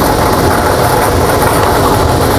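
Lottery ball draw machine running: a steady, loud rattle of numbered balls tumbling in the mixing chamber, with no break.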